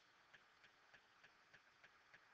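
Near silence: room tone with faint, evenly spaced ticks, about three a second.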